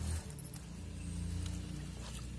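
Hands mixing damp potting soil in a metal pan, with faint scraping and rustling, over a steady low hum like an engine running.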